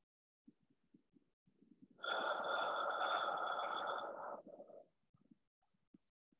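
A long, audible breath exhaled out through the mouth, starting about two seconds in and lasting about two and a half seconds, with a few faint soft sounds before it. It is the exhale of a 'bunny breath' yoga breathing round: three short inhales through the nose, then an audible exhale out the mouth.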